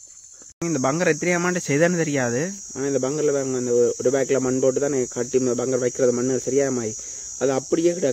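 A man talking steadily over a continuous high-pitched insect chirring, the drone of crickets or similar insects in the surrounding scrub. The talk and the chirring both start suddenly about half a second in.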